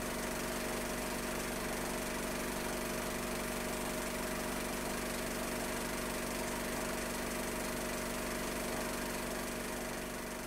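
Steady hum and hiss with a few faint held tones, unchanging throughout.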